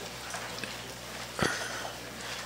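Quiet room tone: a steady low hum and hiss, with one short soft thump about one and a half seconds in.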